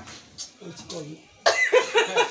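A brief lull with faint voices, then a man's voice starts loudly about one and a half seconds in.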